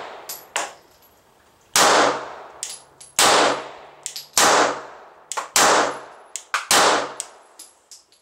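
Five 9mm pistol shots from a Glock 26, fired at a slow, even cadence of about one every 1.2 seconds, each with a long ringing tail. Between the shots, ejected brass casings clink and ring as they land.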